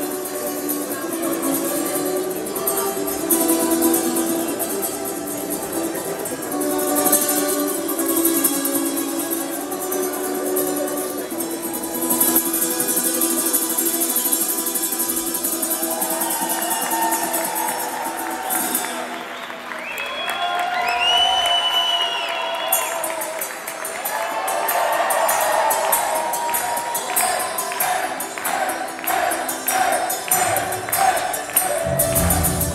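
Live solo acoustic guitar, played slowly with the hall's reverberation. About two-thirds of the way in the guitar gives way to voices and crowd cheering with a whistle. Near the end a tambourine starts a steady beat as the band comes in.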